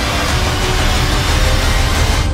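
Film-trailer sound design: a loud, steady rushing roar with a heavy low rumble for an astronaut tumbling through the sky, with faint score tones underneath.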